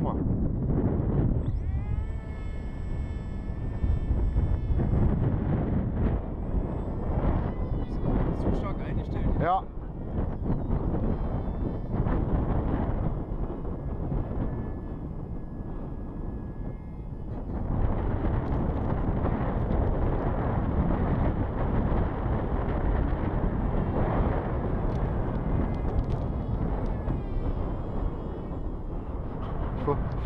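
Strong wind rumble on the microphone, with the high whine of a Wing Wing Z-84 flying wing's electric motor spinning up about two seconds in. Near ten seconds the whine rises sharply in pitch, and fainter motor whine comes and goes later.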